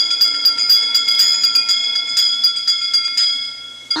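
A bell ringing rapidly, about five strikes a second, answering the séance call to give a hint by ringing a bell. The ringing stops shortly before the end.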